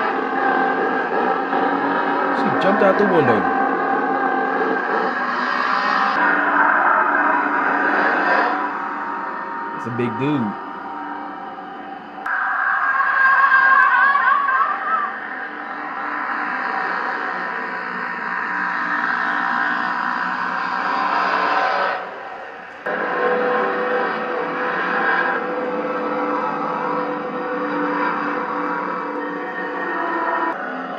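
Horror film soundtrack: a dense, sustained score with ringing, gong-like metallic tones and wavering cries over it. It drops away briefly about 12 seconds in and again about 23 seconds in.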